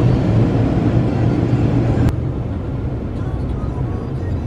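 Car cabin noise: a steady low engine and road rumble heard from inside the car. About two seconds in it cuts abruptly to a slightly quieter, similar rumble.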